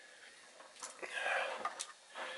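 Faint sharp clicks and a short scraping rustle from screwdriver work on the screws of an inverter's circuit board, about a second in.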